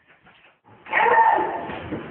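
Near quiet, then about a second in a loud, high-pitched whimpering cry with a clear pitch, which fades away over the next second.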